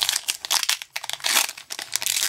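Foil wrapper of a Pokémon TCG booster pack crinkling in the hands, an irregular run of crackly rustles as it is gripped and worked at for opening.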